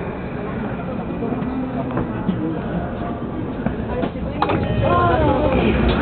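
Interior of a JR commuter train running slowly into a station, a steady low rumble, with a sharp clack about four and a half seconds in. After it, the sound grows louder and a pitched sound that rises and falls comes in as the doors start to open.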